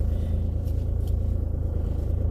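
Steady low rumble of a car's engine and road noise heard from inside the cabin.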